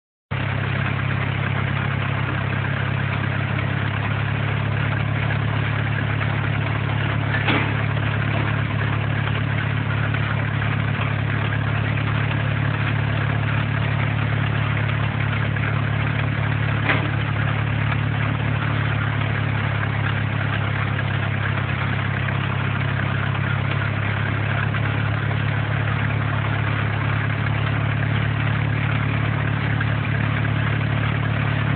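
Farmall F-20's four-cylinder engine running at a steady speed, powering a belt-driven loader off its flat belt pulley as the bucket is raised. Two short clicks stand out, one about a quarter of the way in and one a little past halfway.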